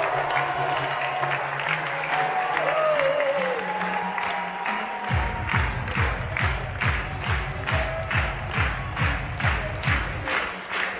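A crowd applauding over music. About halfway through, a heavy bass beat comes in and the clapping turns rhythmic, about two and a half claps a second in time with it.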